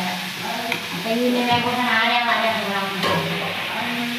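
A perforated metal spoon stirring chopped onions and tomatoes in a metal kadai over a light sizzle, while a voice sings long drawn-out notes over it.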